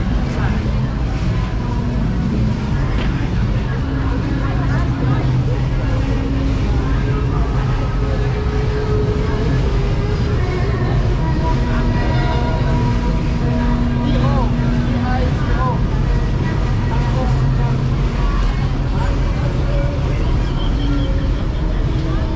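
Busy street-market ambience: a loud, steady low rumble of vehicles with scattered voices from the crowd.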